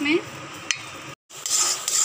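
A single light click against a steel bowl, then after a brief gap a spatula stirring and scraping thick, grainy milk-cake mixture of reduced milk, sugar and ghee in a kadhai on the stove, with a soft sizzle.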